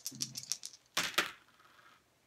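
Several small dice rattled in cupped hands and thrown onto a tabletop: a run of light clicks, then a louder clatter about a second in as they land and tumble.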